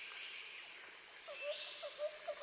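Outdoor nature ambience: a steady high-pitched insect drone, with a bird giving a quick run of short, repeated calls from about halfway through.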